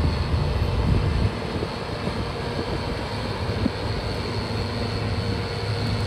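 New Holland CX8080 straw-walker combine harvester running steadily while cutting, a continuous machine drone with a low hum underneath.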